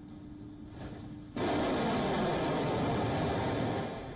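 A faint steady hum, then about a second and a half in a steady rushing noise, even across low and high pitches, starts suddenly and holds without change.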